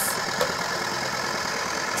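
Battery toy blender's small motor running steadily, spinning its plastic jar of fruit pieces. A faint click comes about half a second in.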